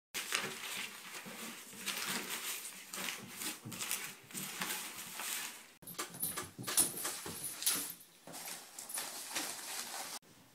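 Loose sheets of paper rustling and crinkling as they are handled, in quick, irregular strokes. After a short break about six seconds in, the irregular rustling goes on with a faint thin high whine over it.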